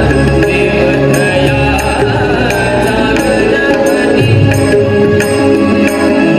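Amplified Marathi devotional bhajan music: a harmonium holding sustained chords over a tabla beat, with bright metallic strikes about every half second keeping time.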